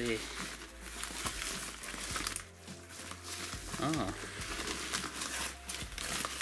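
Plastic bubble mailer crinkling and rustling as it is handled and opened, in irregular crackles, with a quieter lull about halfway through.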